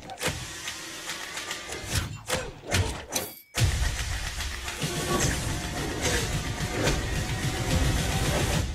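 Action film trailer soundtrack with music and sound effects, marked by sharp hits. A little over three seconds in it drops suddenly to a moment of silence, then comes back with a loud hit and dense music.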